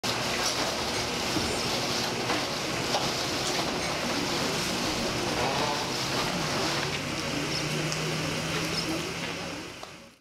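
Atomstack A5 Pro 20 W diode laser engraver running as it cuts wood: the steady noise of the laser module's cooling fan, with a low steady hum joining about six seconds in. The sound fades out near the end.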